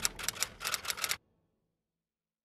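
Typewriter key-click sound effect: a quick run of sharp clicks for just over a second, stopping suddenly.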